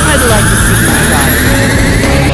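Cartoon energy-blast sound effect: a loud, steady roar with a high whine rising slowly in pitch, under a shout.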